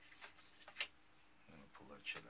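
A few faint, sharp clicks from small hand tools working among a model ship's old rigging, the loudest just under a second in, then a brief low mumble near the end.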